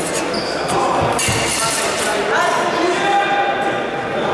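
Several people talking at once in a large, echoing sports hall, with a thump about a second in.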